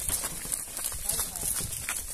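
Hooves of a small herd of cattle walking along a paved road and its dirt edge: an irregular clatter of clip-clop steps.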